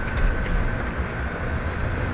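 Outdoor noise from a moving microphone: a low, uneven rumble of wind and handling, with a faint steady whine above it.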